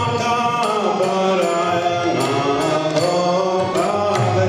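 Devotional kirtan: a man's voice singing a mantra melody over the held chords of a harmonium, with regular drum and percussion strikes keeping the beat.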